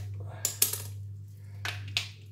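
Rabbit skin being pulled off the carcass by hand, giving short crackling, tearing bursts: one cluster about half a second in and another near the end, over a steady low hum.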